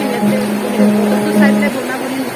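A melody of long held notes, steady and changing pitch every half second or so, stopping shortly before the end, over the steady rush of a stream.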